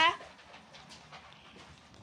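Faint dog panting, right after a man's voice cuts off at the very start.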